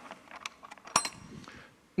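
Spiral gumball machine at its delivery chute: a few light clicks and a clink, the loudest about a second in, as the gumball reaches the bottom and is taken out.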